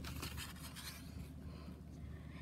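Paper pages of a comic book being turned by hand: a faint rustling and scraping in the first second, quieter after.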